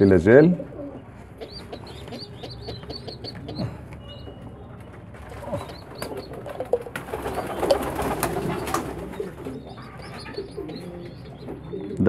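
Pigeon squabs peeping with many short, high, repeated squeaks, the begging calls of chicks waiting to be fed. A louder spell of rustling and handling noise from about six to nine seconds in.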